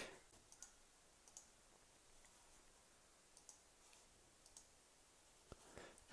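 Near silence with a handful of faint computer mouse clicks, unevenly spaced.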